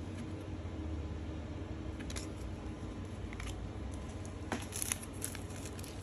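A few faint clicks of trading cards being handled, then, in the last second or so, the crinkle of a plastic card-pack wrapper as it is torn open, over a steady low hum.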